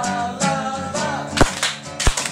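Acoustic guitar strummed with a voice singing, broken by a loud, sharp slap about one and a half seconds in.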